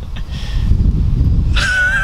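A steady low rumble, then about a second and a half in a person's high-pitched, wavering, whinny-like squeal of laughter.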